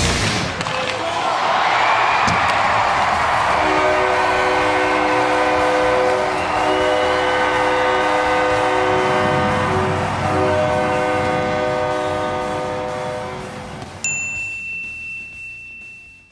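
Closing music of the highlight reel: after a rushing swell, a sustained chord of steady held tones, ending about two seconds from the end with a single bright chime that rings out and fades away.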